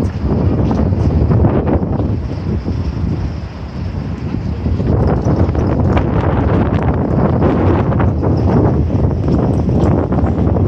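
Wind buffeting the microphone: a loud, low, gusty rumble that eases a little about three to four seconds in, then picks up again.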